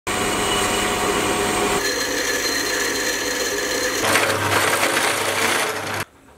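Metal lathe running under cut, a twist drill boring into spinning steel, with a steady motor whine. The sound changes abruptly about two and four seconds in and stops suddenly at the end.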